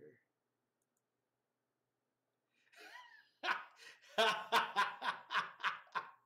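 Dead silence for about two and a half seconds, then a person laughing in a run of short, even bursts, about four a second.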